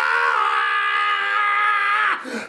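A man screaming, one long held scream at a nearly steady pitch.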